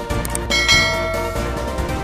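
A bell-like chime sound effect strikes about half a second in and rings for about a second, fading, over background music.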